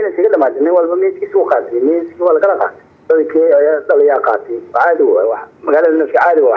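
Speech only: a voice talking in Somali, in phrases with brief pauses. It sounds thin and narrow, as over a phone line.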